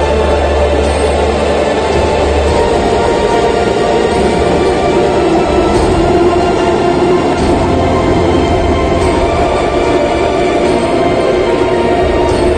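Background music with sustained, held tones over a low droning bass.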